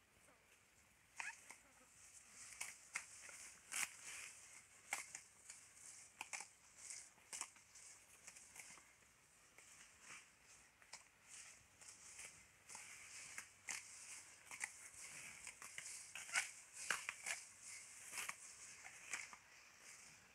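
Cattle grazing Mombaça grass: faint, irregular crisp tearing and crunching as the cows crop and chew the tall grass tips.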